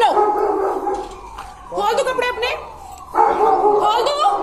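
Loud, high-pitched, strained shouting in a heated street argument, in a few outbursts with short gaps between them, recorded on a phone.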